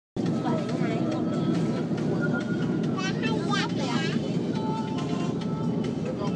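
A sleeper bus's engine and road noise heard from inside the cabin as a steady low rumble. Voices and music play over it, with one voice rising and falling in pitch about three seconds in.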